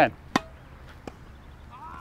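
A tennis ball struck crisply by a racket, one sharp hit with a short ring of the strings, followed about a second later by a much fainter hit as the ball is played back at the other end of the court.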